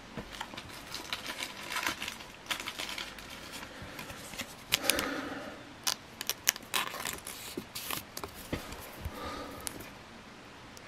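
Clear plastic card sleeve crinkling and rustling as a trading card is slid into it, with many small sharp clicks and taps from handling.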